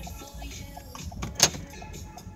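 Pop music from the car radio playing inside the car cabin, with a short, loud rush of noise about one and a half seconds in that swells and fades quickly.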